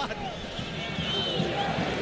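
Stadium crowd of football fans: a steady din of many voices, with a brief high tone rising and falling about halfway through.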